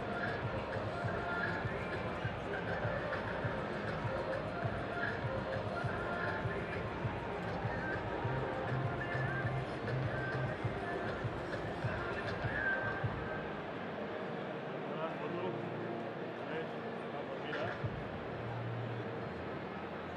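Many voices chatting at once, with music playing underneath.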